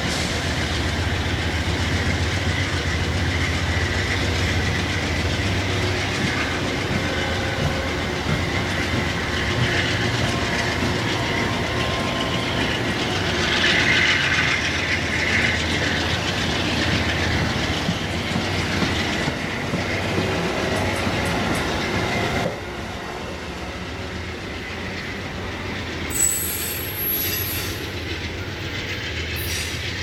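Amtrak Northeast Regional passenger coaches rolling past at close range: steady wheel-on-rail rumble with a faint high wheel squeal at times. The noise drops suddenly about three-quarters of the way through.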